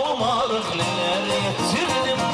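Live Turkish wedding band playing a folk dance tune (oyun havası): a wavering, ornamented melody over a repeating bass line.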